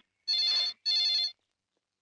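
Telephone ringing: two short rings in quick succession, the double-ring pattern of a phone ringer.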